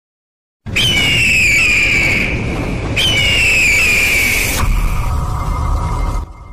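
Animated logo intro sound effect: after a moment of silence it comes in suddenly with a heavy low rumble and a high whistling tone that slides downward, repeated about three seconds in. Near the end it settles into a steadier, lower held tone.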